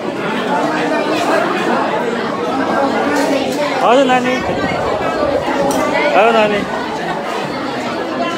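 Many people talking at once around dining tables in a hall, a steady babble of overlapping conversation. Two louder voices rise in pitch about four and six seconds in.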